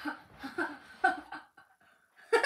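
A child laughing in a few short chuckling bursts that fade out about a second and a half in.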